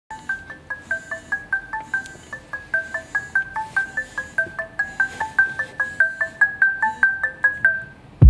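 Smartphone alarm tone ringing: a quick, repeating chime melody of short mallet-like notes, about four or five a second, that stops at the very end.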